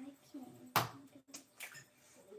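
A single sharp tap of an egg knocked against the rim of a mixing bowl to crack it, less than a second in, with quiet voices murmuring before it.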